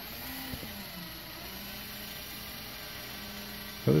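Electric drill running slowly with a faint steady hum, turning a wooden monkey figure over on a threaded rod through a gear mechanism.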